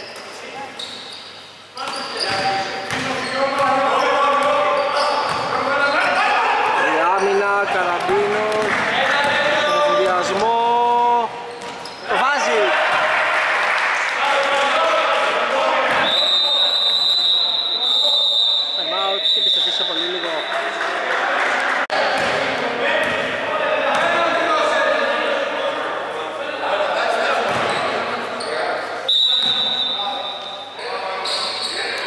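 Basketball bouncing on a wooden gym floor during play, with voices echoing in a large hall. About halfway through, a steady high-pitched tone sounds for about four seconds, and briefly again near the end.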